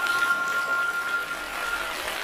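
Intro of a sped-up, chipmunk-pitched song track: a steady high electronic tone with a fainter lower tone beneath it, held over a hiss of background noise, cutting off just before the end.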